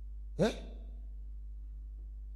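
A man's single short breathy vocal sound, rising in pitch, into a handheld microphone about half a second in, like a sigh or quick exclamation between sentences. A steady low hum runs underneath.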